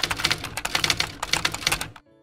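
Typewriter-key sound effect: a rapid run of sharp clacks as on-screen text types out, stopping suddenly at the end.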